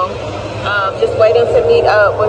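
A woman speaking close to the microphone, over a steady low hum.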